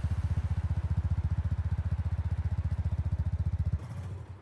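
Motorcycle engine sound effect: a low engine note pulsing rapidly and evenly, as at a steady idle, then cutting off suddenly near the end.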